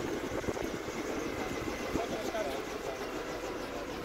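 Faint voices of a group of people talking over a steady outdoor background noise.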